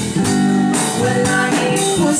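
Live band playing a slow song: guitars and a drum kit keeping a steady beat, with a woman singing.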